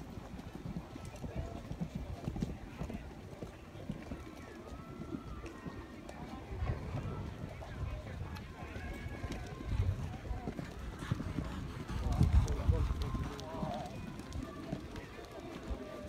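Hoofbeats of a pony cantering on sand arena footing, a dull, uneven drumming, with a louder low rumble about twelve seconds in.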